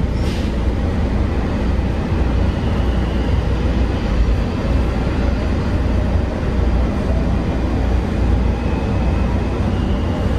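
WMATA Metrorail Breda 3000-series railcar running between stations, heard from inside the car: a steady loud rumble of wheels on track, with a faint high whine in the background from a few seconds in.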